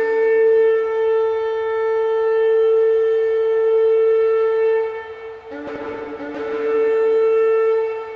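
Two long, steady notes on a horn-like wind instrument: the first is held for about five seconds, and the second begins just after it and runs on to the end.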